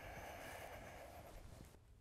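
Near silence: faint steady background hiss of room tone.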